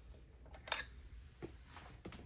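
Faint handling clicks from a Dillon RL550B reloading press as a loaded cartridge is set into its shellplate: one sharp metallic click, then a softer, duller knock.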